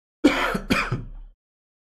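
A man coughing to clear his throat: two rough bursts about half a second apart.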